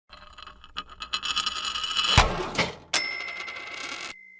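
Intro sound logo for a money channel: a quickening run of short clinks that builds to a hit about two seconds in, then a second sharp hit about three seconds in, followed by a bright, steady bell-like tone that rings on past the end.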